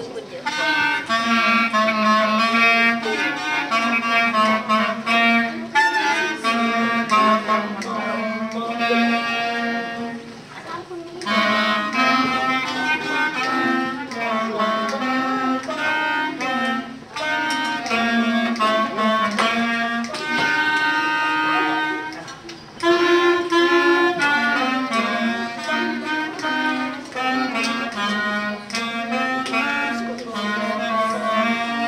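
A section of beginner clarinets playing a tune together, with short breaks between phrases about eleven and twenty-two seconds in.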